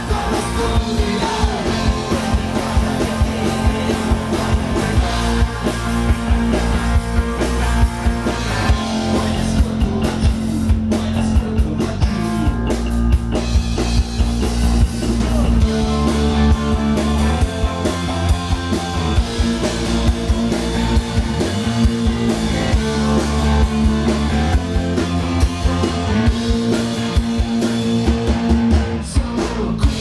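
Punk rock band playing live and loud: distorted electric guitars, electric bass and drum kit.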